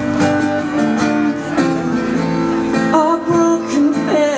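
Acoustic guitar strummed live in a song, with some singing.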